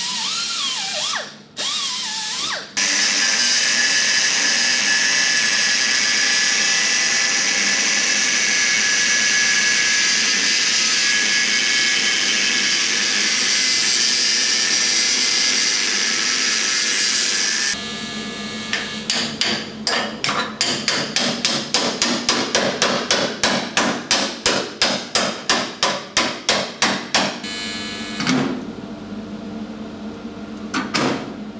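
An angle grinder's cut-off disc cutting steadily through the old steel dash panel for about fifteen seconds, after a few seconds of a smaller die grinder. Then rapid hammer blows on the steel, about three a second, followed by a few separate knocks near the end.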